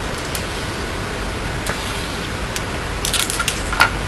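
Go stones clicking against a wooden board and each other as they are cleared and set down: a few scattered faint clicks, then a quick run of clicks near the end, over a steady hiss.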